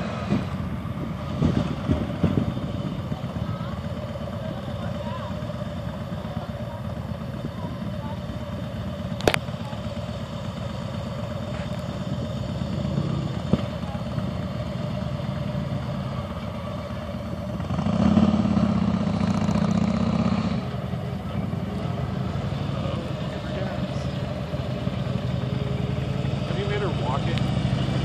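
Motorcycle V-twin engine running at low speed across an open lot, a steady low rumble that grows louder for a couple of seconds about eighteen seconds in.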